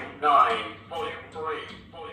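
Talking microwave's recorded male voice announcing the volume setting as its volume knob is turned counterclockwise, in short spoken phrases.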